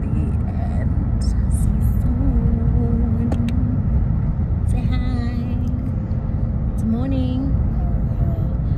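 Steady low road and engine rumble inside a moving car's cabin, with a few short stretches of voice over it, a couple of seconds in, about five seconds in and near the end.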